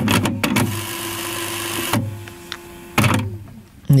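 Cassette deck mechanism chewing up a tape: a run of clicks, a hissing whir for about a second, then a lower steady hum with a single click, and a few more clicks near the end.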